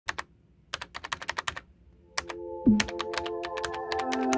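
Computer keyboard typing clicks, two quick runs of keystrokes, as a sound effect. About halfway through, music with held synth tones comes in, and a low note swoops down.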